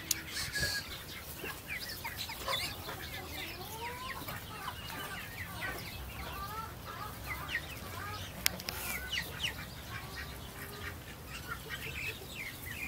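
A small flock of chickens clucking and calling, with many short high chirps and rising calls overlapping. A single sharp click about two-thirds of the way through.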